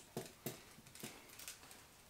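A few light, sharp clicks of a brake hose and its metal fittings being handled and turned in the hands, spread over about two seconds.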